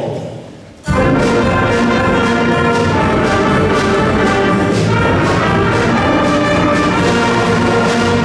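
Middle school concert band of woodwinds and brass coming in loudly and suddenly about a second in, then playing full and steady.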